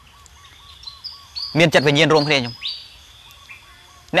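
Small birds chirping faintly in the background: a quick run of short repeated chirps in the first second, thin high notes, and a rising call. A man's voice speaks one short phrase about a second and a half in.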